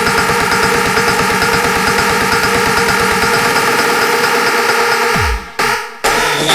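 Circuit/guaracha electronic dance music in a build-up: sustained synth chords over a rapid, dense drum roll, ending about five seconds in with a falling bass sweep and a brief break before the beat returns.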